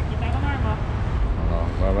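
A man speaks briefly over a steady low rumble of background noise.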